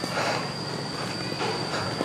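A steady high-pitched whine, one thin unchanging tone held throughout, over a bed of outdoor noise with a few faint short sounds.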